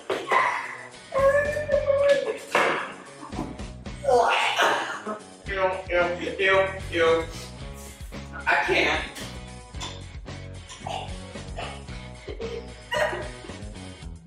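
Wordless vocal reactions from a person who has just taken a bite of something he finds disgusting, heard over background music.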